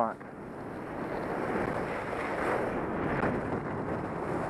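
Telemark skis sliding and carving on soft snow, with wind rushing over the helmet-camera microphone: a steady hiss that builds over the first second and then holds.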